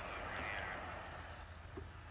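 Faint low rumble and hiss of a truck driving slowly, heard from inside the cab.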